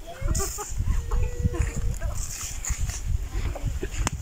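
Chickens clucking in the background over the rustle and scrape of stem cuttings being pushed into dry, crumbly soil.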